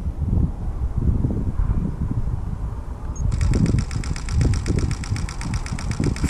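Camera shutter firing in a continuous high-speed burst of about eight frames a second, starting a little past halfway, as the camera fills its buffer. A low, uneven rumble of wind on the microphone runs underneath.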